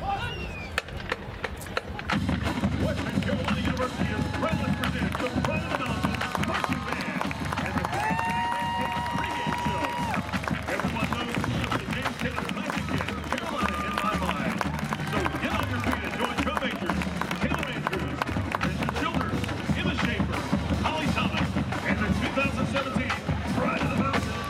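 Marching band drumline playing a marching cadence, a steady run of drum strokes that starts about two seconds in, with spectators talking close by.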